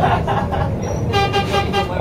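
A vehicle horn gives one steady toot of just under a second, starting about halfway through, over the continuous running noise of a bus.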